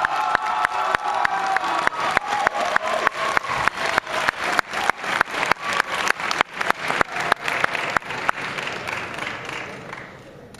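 An auditorium audience applauding a first-place award. One pair of hands claps close by at about four claps a second over the wider applause, which dies down near the end.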